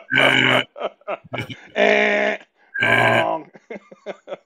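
A man's voice making three drawn-out, steady-pitched vocal noises of about half a second each, with short bits of talk between them.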